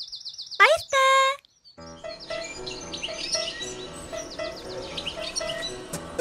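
A quick run of high, repeated bird chirps, then after a short pause a soft music bed with more bird chirping over it.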